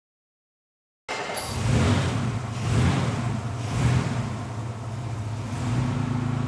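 Jaguar XK140's straight-six engine running, starting abruptly about a second in; the revs swell and ease three times, then settle to a steadier note.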